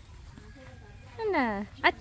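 Quiet outdoor background, then a short spoken phrase in a person's voice with a falling pitch near the end.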